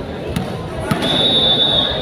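Hall full of crowd chatter, with two sharp knocks in the first second like a volleyball bounced on the court floor, then a referee's whistle blown once, steady and high, for almost a second, signalling the serve.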